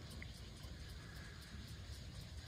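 Faint, steady outdoor background noise with a low rumble and no distinct event.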